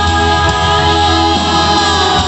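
A live rock band heard from within the audience: singing over guitars and a sustained bass line, with long held sung notes.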